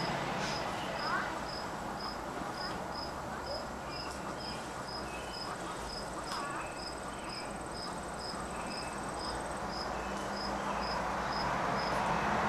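Insect chirping in an even rhythm, about two short high chirps a second, with a thin, higher trill joining for a few seconds in the middle.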